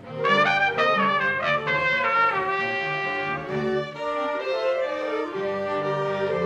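A small chamber orchestra of violins, cello, flutes, clarinet and trumpet playing an upbeat piece, with the trumpet standing out. After a brief break right at the start, a quick flurry of short notes comes, then held chords.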